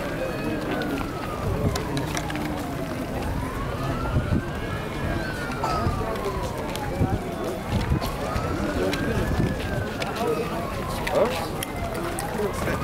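A siren in a slow wail, its pitch climbing for about two seconds and falling for about two and a half, repeating roughly every four and a half seconds. Underneath it are the chatter and footsteps of a large crowd walking.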